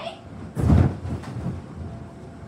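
A child landing on an inflatable bounce house: a heavy thump about half a second in, followed by a few lighter bounces.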